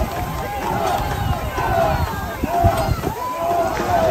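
Voices of a hand-pumped fire engine's crew shouting in a quick repeated cadence, about two calls a second, as they work the pump handles, over the low, uneven knocking of the pumping.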